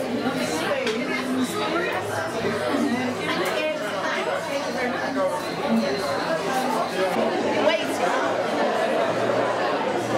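Crowd chatter in a hall: many people talking at once, no single voice standing out.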